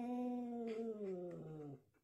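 A domestic cat's long, low yowl that holds one pitch and then drops, stopping shortly before the end.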